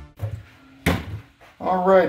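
Background music cuts off, then two handling knocks on the metal resin vat and its FEP frame on the bench, a faint one and a sharper one about a second in. A man's voice starts near the end.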